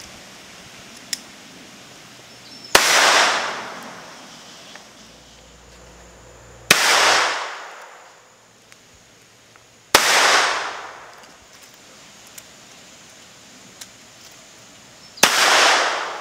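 Four shots from a LifeCard .22 LR single-shot pistol, each a sharp crack with a short trailing echo, spaced three to five seconds apart.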